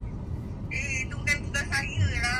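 Steady low rumble of a moving car heard from inside the cabin, with voices talking over it from a little under a second in.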